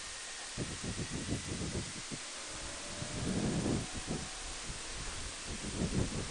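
Steady wind rush and irregular low buffeting on the microphone of a Honda Gold Wing 1800 touring motorcycle under way on a paved road, with a stronger gust a little past halfway.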